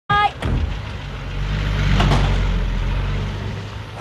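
Low, steady rumble of a motor vehicle engine, swelling around the middle and fading toward the end. A brief high-pitched voice-like call sounds at the very start.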